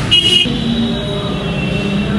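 A short high-pitched vehicle horn beep near the start, over the steady low rumble of road traffic.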